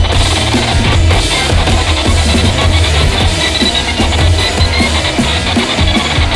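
Loud rock band music with no vocals: a drum kit hitting steadily over a heavy bass.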